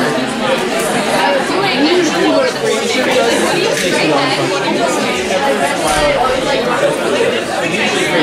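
Many voices talking over one another in a large room: a hall full of students chattering in overlapping conversations, with no single speaker standing out.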